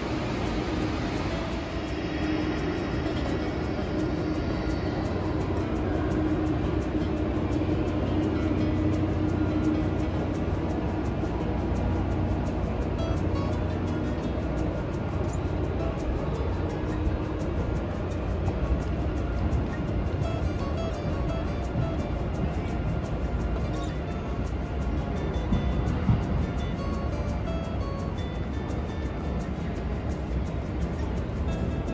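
Music playing over the steady running noise of a Deutsche Bahn ICE high-speed electric train pulling out of the platform.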